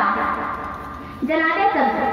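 A voice over a public-address loudspeaker, in a speech-like or chanted delivery: a held note tails off over the first second, then the voice comes back in about a second and a half in.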